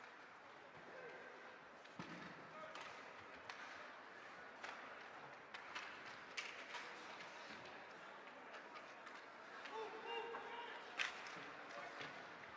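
Ice hockey play: scattered sharp clicks and knocks of sticks on the puck and skates on the ice, with a louder crack near the end, over a faint murmur of voices in the rink.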